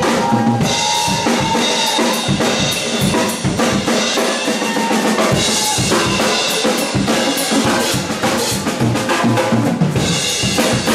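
Drum kit played in a live drum break: rapid snare and bass-drum hits under a continuous cymbal wash, with the bass and guitar mostly dropped out after the first second or two.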